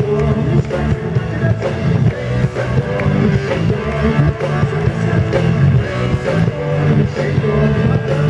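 Live rock band playing loudly: drum kit, electric guitar and bass guitar in a steady rock groove.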